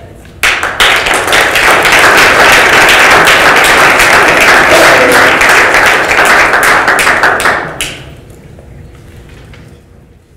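Audience applauding. It starts suddenly about half a second in and dies away after about seven seconds.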